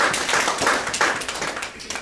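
Audience applauding, the clapping fading out near the end.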